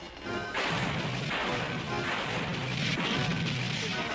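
Soundtrack of an animated TV cartoon: music mixed with noisy crashing sound effects that recur roughly once a second.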